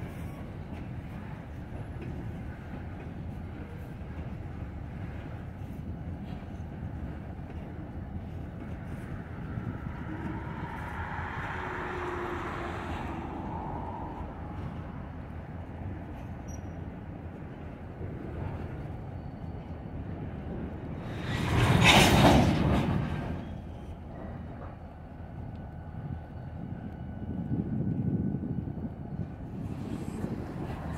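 Norfolk Southern mixed manifest freight train rolling through a rail yard: a steady rumble of cars and wheels on the rails. A brief, loud rush of noise about two-thirds of the way through stands out.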